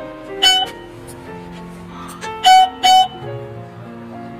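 Short electronic beeps from a wireless caregiver pager's plug-in receiver, over background music: one beep about half a second in, then two louder beeps close together a little after two seconds.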